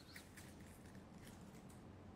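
Near silence, with faint scattered light ticks of folded paper raffle slips being stirred by hand on a glass tabletop.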